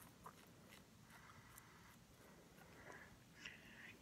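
Near silence, with a few faint scraping strokes of a cartridge razor drawn through shaving cream on the upper lip.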